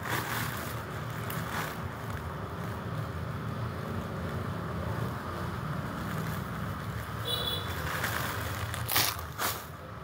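Steady low background hum with light rustling of clothes being handled, and two short handling noises near the end.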